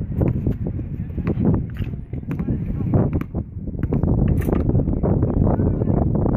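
A basketball bouncing and sneakers on an outdoor asphalt court, irregular knocks, under steady wind buffeting the microphone.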